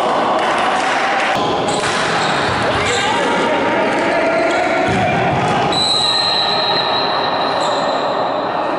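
Futsal game sound in a large sports hall: players calling out while the ball is kicked and bounces on the court floor, all carrying a hall's reverberation.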